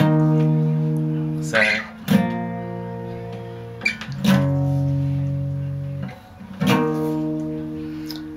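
Acoustic guitar playing power chords: four chords, each strummed once and left to ring out and fade for about one and a half to two seconds before the next.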